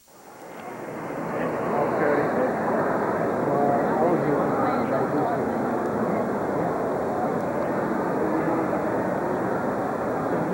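Crowd of many people talking at once, a dense murmur in which no single voice stands out, fading in over the first two seconds and then steady.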